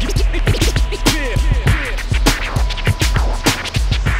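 Hip-hop/trap track with turntable scratching: many quick back-and-forth record scratches, sliding up and down in pitch, over a continuous deep bass and a steady drum beat.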